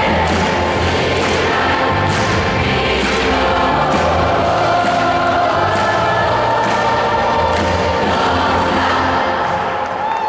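Large youth choir singing over loud amplified music with a steady drum beat and bass line. Near the end the beat and bass drop away, leaving the voices.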